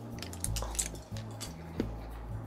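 Quiet background music with a repeating low bass line, under a few small clicks and mouth noises as pieces of cinnamon chewing gum are tossed into the mouth and chewed.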